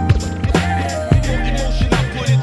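Old-school hip hop beat playing without vocals: a steady drum pattern over a bassline and a sampled melodic line.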